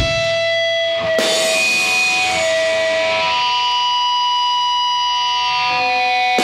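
Distorted electric guitar playing loud held chords that ring on and sustain, with a new chord struck about a second in and some notes bending in pitch. There are no drums under it.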